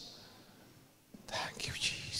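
A man whispering a prayer into a close handheld microphone: about a second of near quiet, then short, breathy, hissing whispers from a little past a second in.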